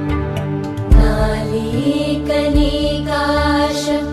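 Devotional music: a chanted Sanskrit hymn melody over a steady held drone, with a few deep beats.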